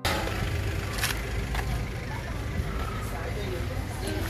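Outdoor food-stall ambience: a steady low rumble with faint voices in the background and a couple of light knocks about a second in.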